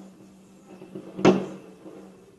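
Aerial firework bursting: one sharp bang a little over a second in, fading away within a fraction of a second.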